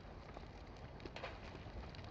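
The TV episode's soundtrack playing faintly: a low, even hiss with a few soft clicks.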